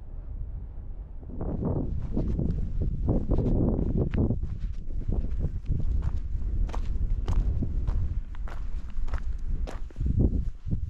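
Footsteps of a person walking along a stony hill path, starting about a second and a half in at roughly two to three steps a second. Under the steps is a steady low rumble of wind on the microphone.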